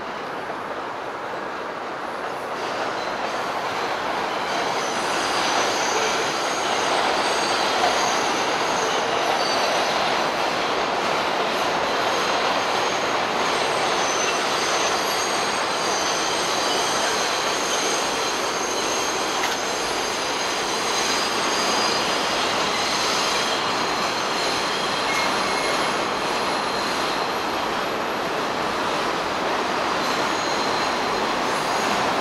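Elevated subway train running along the el tracks. The steel wheels give a high, thin squeal on the rails over a steady rumble. The sound swells over the first few seconds as the train comes closer, then stays loud and steady.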